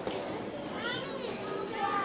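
Many children's voices chattering at once, high-pitched and overlapping, with no clear words.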